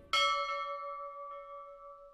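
A bell chime struck once sharply, then ringing with a clear steady tone that slowly fades. A faint second tap comes about a second later. It is a bell sound effect.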